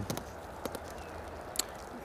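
A few faint, sharp clicks and light crinkles from handling a foil-bubble insulation sheet on the wooden top bars of an open hive, over a low steady hiss.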